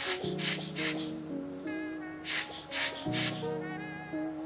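Rubber hand air blower squeezed six times in two quick sets of three, each puff a short hiss of air blown into a coffee grinder's burr housing to clear out grounds.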